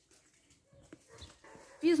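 Faint background with a few soft ticks from handling, then a woman starts speaking near the end.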